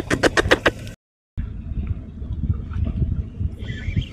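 A quick run of sharp clicks, then a sudden cut to a steady low rumble of wind buffeting the microphone over open, choppy water.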